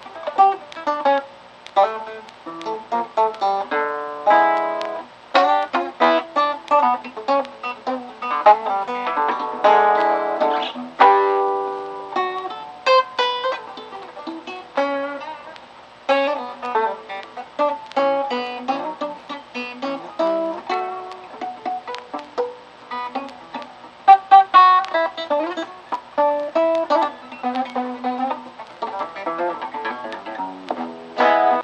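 Solo acoustic guitar playing a blues-style instrumental introduction: quick picked single notes mixed with struck chords, with a few louder chord hits, the loudest about two-thirds of the way through.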